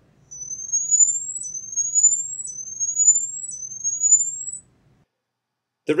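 A piezoelectric (PZT) patch on a bolted test structure, driven with a swept excitation tone: four high-pitched rising whines, each about a second long, back to back, over a faint low hum. This is the impedance-method test sweep that the monitoring system uses to check the structure for damage.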